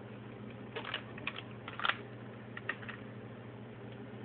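Plastic M&M's candy wrapper crinkling as it is handled, in four short bursts of crackles spread over the first three seconds.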